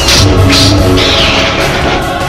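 Loud electronic music with a heavy bass, with two arching whooshes about half a second and a second in.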